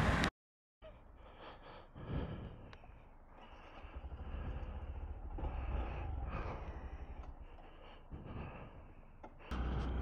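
Close, muffled breathing of a rider in a helmet, over a faint steady low rumble. A louder rumble comes in near the end.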